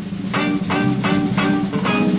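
Electric blues band playing the instrumental intro: an electric guitar picks a repeated phrase of short, evenly spaced notes, about three a second, over bass and drums.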